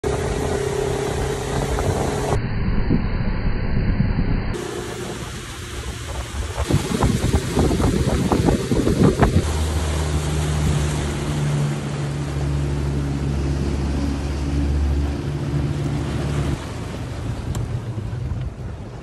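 Suzuki outboard motor running at speed, with the wake rushing and the hull slapping on the water. About halfway through this gives way to a steady low engine hum.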